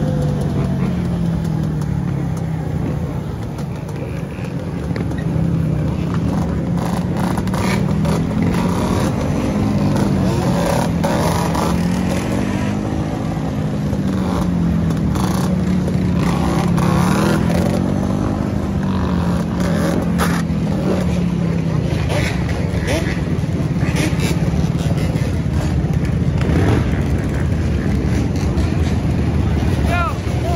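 Yamaha Banshee quad's two-stroke twin engine running while the machine is held up in a wheelie, its pitch rising and falling every couple of seconds as the throttle is worked up and down, then holding steadier after about twenty seconds. Other quads and dirt bikes run around it.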